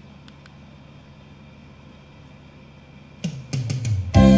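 Music from a Lo-D AX-M7 mini hi-fi's CD playback cuts out while the player skips ahead to track 10. What is left is a steady, low fan hiss with two faint clicks just after the start. The next track's music starts again in the last second.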